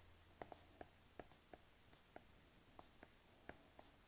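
Faint, irregular taps of a stylus tip on a tablet's glass screen while letters are handwritten, about a dozen light clicks over a few seconds.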